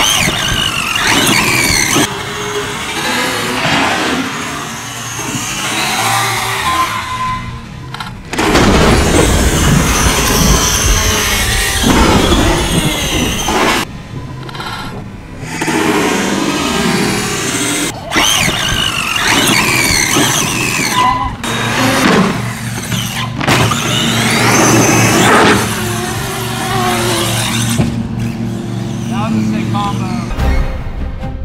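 Traxxas X-Maxx RC monster truck's electric motor whining, its pitch rising and falling again and again as the truck speeds up and slows, with music in the background.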